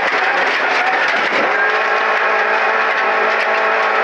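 VAZ 2108 (Lada Samara) rally car's four-cylinder engine held at high revs, heard from inside the cockpit. Its pitch dips briefly and climbs back about a second and a half in, over a steady rush of road and tyre noise.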